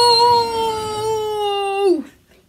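A child's long, high-pitched play-acted cry of "Nooo!", held steady and slowly sinking in pitch, then falling away sharply at the end.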